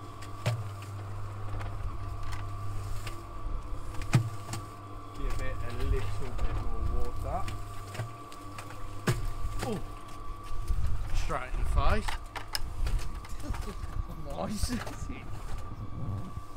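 Electric cement mixer running steadily, its motor humming as the drum turns a sand-and-cement mortar mix, with a couple of sharp knocks. Voices and a laugh are heard under it.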